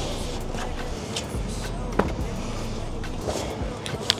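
Steady outdoor background noise with a few sharp knocks and clicks, the loudest about two seconds in, from gear being handled at a car's open hatch.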